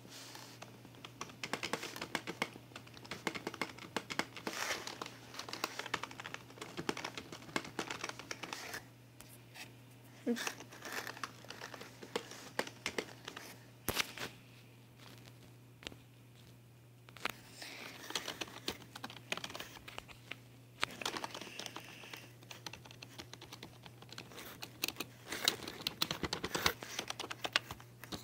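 Keys of a new Genius keyboard being pressed in irregular clicks, mixed with crinkling of its plastic wrapping film as it is handled, with a quieter stretch about midway.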